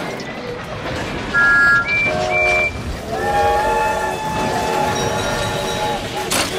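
Steam locomotive whistles over a steady hiss and rumble. A few short toots of different pitches come in the first three seconds, then one long, lower whistle sounds from about three seconds in.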